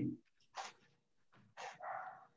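A dog barking faintly in the background, two short barks, the second about a second after the first.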